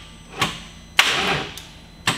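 A 24-valve VR6 engine's starter clunking in briefly, several times about a second apart, each clunk dying away quickly without the engine catching. The engine won't start, and the starter is suspected to be bad.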